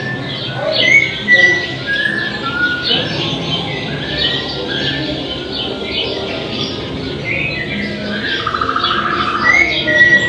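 Birdsong ambience of many short chirps and whistles, with a rapid trill about eight seconds in.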